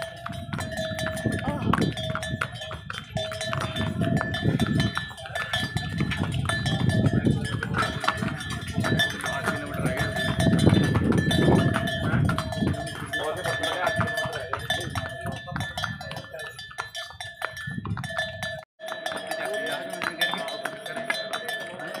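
Mule's harness bell ringing steadily as the animal walks, with a brief break near the end, over the rumble of wind on the microphone.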